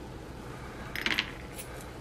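A few light metallic clicks about a second in, from small steel diamond needle files being handled and put down.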